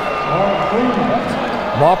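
Speech: a male basketball play-by-play announcer talking.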